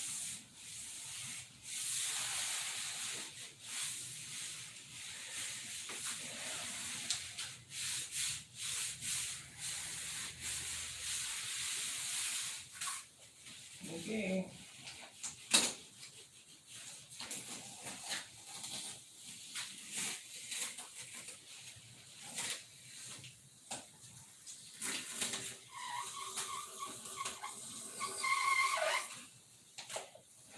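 Hand sanding and rubbing on the painted surface of a balsa model airplane: a dry, scratchy hiss for about the first twelve seconds, then scattered taps and clicks with one sharp click midway, and a short squealing stretch near the end.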